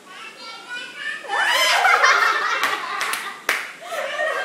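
A high-pitched voice calling out in a rising sweep with no clear words, with three sharp hand claps about two and a half to three and a half seconds in.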